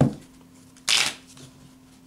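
Deck of tarot cards being shuffled by hand: two short bursts of shuffling, one at the start and another about a second in.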